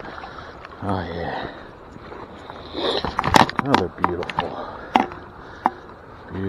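A brown trout splashing in a landing net at the water's surface, with sharp splashes and knocks clustered about three to five seconds in. Over this are steady river flow and brief exclamations from a man's voice.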